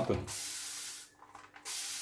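Xiaomi handheld water spray bottle hissing out a fine mist in two bursts of under a second each, with a short gap between; one press of the pump gives a sustained spray.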